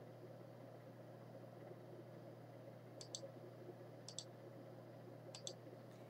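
Near silence broken by faint computer mouse clicks: three quick double clicks, about a second apart, in the second half.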